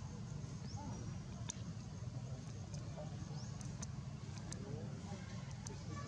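Steady low outdoor rumble with a few scattered sharp clicks and some short, high, rising chirps.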